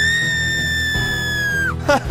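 A very high-pitched, cartoon-style crying wail, one long held cry that rises at the start and breaks off near the end, over background music.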